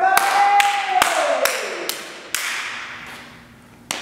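A man's voice holding one falling, drawn-out note, over a series of sharp taps about two a second that ring on in a large, echoing room.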